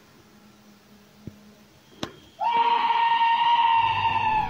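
A long, high scream held on one pitch from an unseen source outside the trailer door. It starts about two and a half seconds in and lasts a couple of seconds, after two faint knocks.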